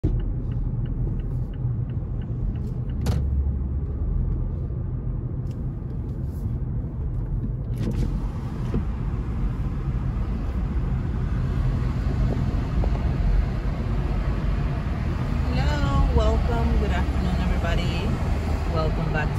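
Road noise heard from inside a moving car: a steady low rumble of engine and tyres, with more hiss of traffic and air from about eight seconds in. A voice is heard near the end.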